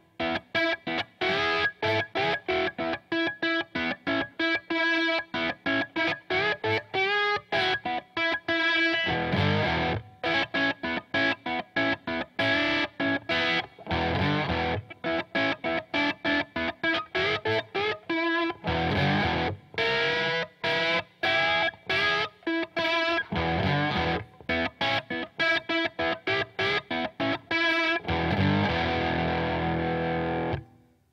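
Electric lap steel guitar in open E tuning, played with a steel bar in quick picked notes. A sliding blues melody on the B string runs against the open high E string, which rings on steadily as a drone, and lower notes join in now and then.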